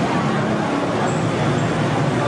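Steady busy-street noise: road traffic running, mixed with voices from a passing crowd.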